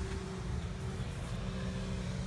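Steady low mechanical hum with a faint held tone, even throughout, with no distinct event.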